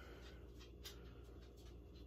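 Near silence: room tone with a faint steady low hum and a few soft clicks.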